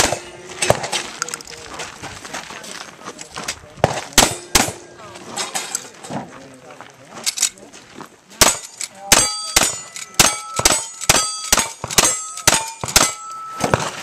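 Gunshots at steel targets in a timed cowboy action shooting stage. For the first several seconds the shots come singly, a second or more apart. Then a rifle fires a fast string of about ten shots, each hit leaving the steel plates ringing.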